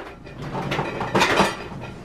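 Slim plastic laundry cart rolling out on its casters across a tile floor, with a steady rolling rumble and the plastic shelves and loaded bottles rattling, loudest about a second in.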